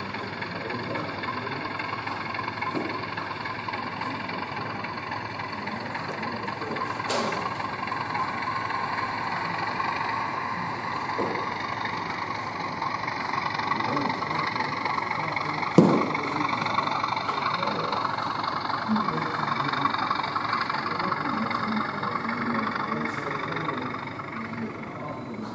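Model diesel locomotive's engine sound, steady and then slowly rising in pitch as the train moves through, over a background of hall chatter. A sharp knock about two-thirds of the way in.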